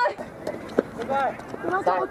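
Footballers' voices calling across the pitch during a small-sided match, with one short sharp knock a little under a second in.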